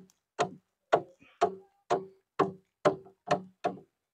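Round metal mesh sieve knocked against the rim of a metal wax-melting tank, about two sharp knocks a second, each with a short metallic ring, while straining melted beeswax cappings.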